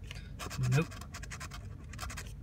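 Scratch-off lottery ticket being scraped with a handheld pen-like tool: a quick run of short scratching strokes across the card's coating.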